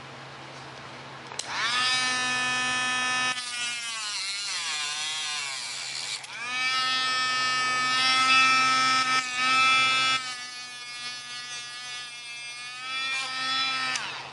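Dremel rotary tool starting up about a second and a half in and cutting through a carbon fiber rod: a high whine whose pitch sags each time the tool bites into the rod and climbs back when it runs free.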